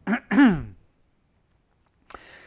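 A man clearing his throat with a short cough in two quick parts within the first second, the second part louder and falling in pitch.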